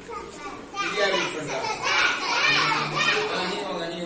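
A class of young schoolchildren calling out together, many high voices overlapping. They start about a second in and are loudest in the middle.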